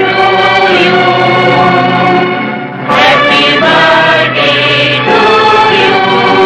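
A choir singing long held notes, with a short break and a new phrase starting about three seconds in.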